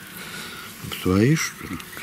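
A man's voice saying a brief word or two about a second in, over faint background noise.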